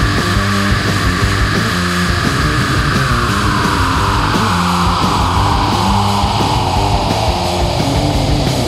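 AI-generated heavy rock song: a repeating bass and drum groove under one long held high note that slowly slides down in pitch.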